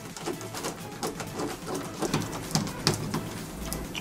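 Screwdriver working the screws of a doorknob loose, with irregular small metallic clicks and scrapes.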